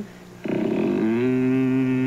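A man's long closed-mouth "mmm" hum held at one steady pitch for about a second and a half, starting about half a second in. It is the drawn-out first half of an approving "mm-hmm."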